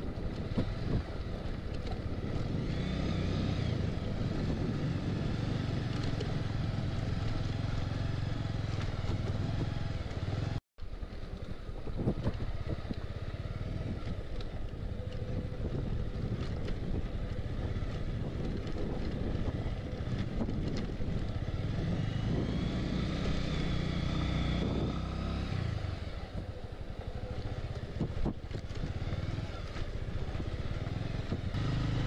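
Motorcycle engine running on a rough dirt track, its revs rising and falling at times. The sound cuts out completely for a moment about ten seconds in.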